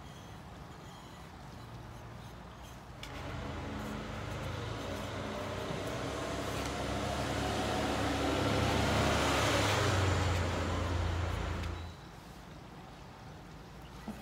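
A heavy motor vehicle's engine passing by, swelling steadily for several seconds before cutting off abruptly near the end.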